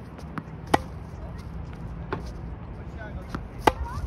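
Tennis balls being hit with a racket and bouncing on a hard court: sharp pops, the two loudest about three seconds apart, with fainter ones between.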